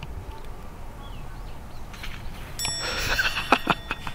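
Low wind rumble on the microphone, then from about two and a half seconds in a bright bell-like ringing with a few sharp clicks, fading just before the end.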